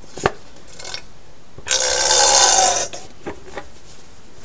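A plastic quart bottle of gear oil being handled as its nozzle comes out of a GM 14-bolt axle's fill hole: a light click just after the start, then a loud, noisy rasp lasting about a second near the middle.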